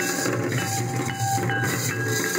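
Village folk drum group playing barrel drums in a fast, dense rhythm with a steady rattle of small percussion. A high tone is held over the drumming in stretches.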